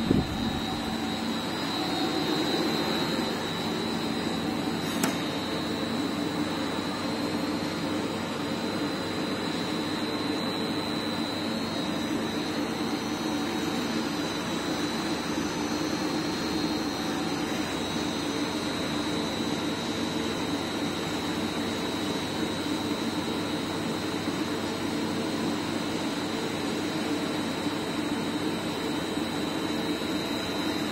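EDW-15 bead mill with its two pumps running steadily on a test run, a constant machine noise with a thin high whine over it.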